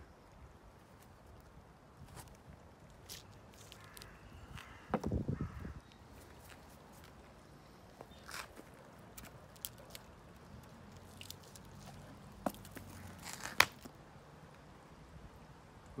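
Scattered light clicks and knocks of hand tools working on a wooden concrete-countertop form while it is taken apart, with a louder thump about five seconds in and a sharp click near the end.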